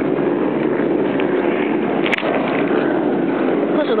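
A steady engine-like drone runs throughout, with one short click about two seconds in.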